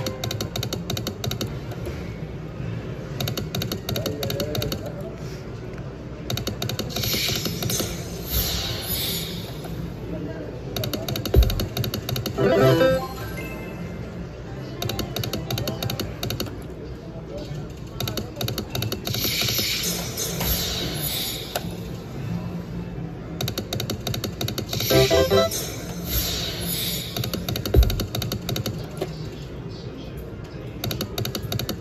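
Bingo-based (Class II) video slot machine during repeated spins: clicking reel sounds and short ringing jingles come round every few seconds over casino background noise, with a couple of sharp knocks.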